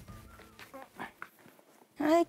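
A beagle whining faintly in a few short high notes, with some light taps.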